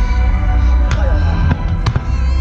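Fireworks going off over loud music with a heavy bass: three sharp bangs, about a second in, at one and a half seconds and just before the end.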